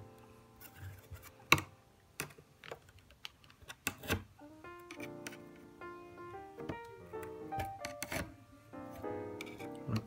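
Irregular sharp metallic clicks and scrapes of a rivet-removal tool working the rivets out of a MacBook keyboard's aluminium backplate, the loudest click about a second and a half in. Background music plays throughout, with melodic notes clearest in the second half.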